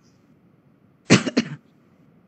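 A person coughs, a sharp burst with a quick second pulse, about a second in; otherwise near-silent room tone.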